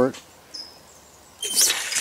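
Water turned back on at a garden tap: about one and a half seconds in, a loud, steady hiss of water starts rushing through the Galcon alternator valve, which has switched over and now sends the flow out of its other outlet.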